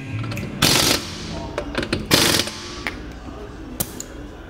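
Pneumatic impact wrench at a car wheel, run in two short bursts about a second and a half apart, with small sharp clicks between.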